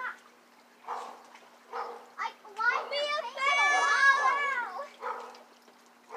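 Children shouting and calling at play, in short high-pitched bouts, with several voices overlapping loudest around the middle. A faint steady hum runs underneath.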